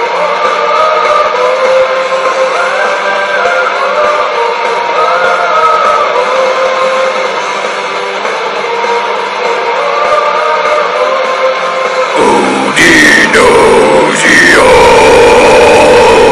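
Folk/Viking metal instrumental passage: a slow melodic lead line over dense guitars. About twelve seconds in, loud, harsh vocals come in over it, bending sharply in pitch.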